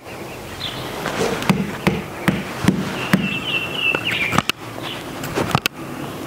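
Outdoor ambience: scattered clicks and knocks with a few short, high, wavering chirps, the longest about three seconds in.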